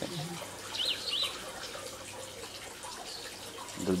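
Water running steadily into a fish tank.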